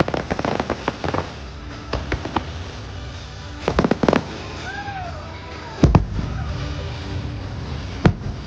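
Aerial fireworks shells bursting in clusters of sharp bangs and crackles, with a loud double bang about six seconds in, over the show's music soundtrack.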